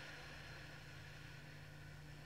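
Near silence: a faint, steady low drone held on one pitch under a soft hiss.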